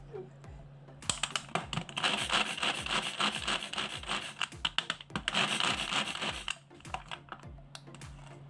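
Coconut flesh being grated on a metal grater: fast, rasping scrapes, several strokes a second. It starts about a second in and stops a little before the end.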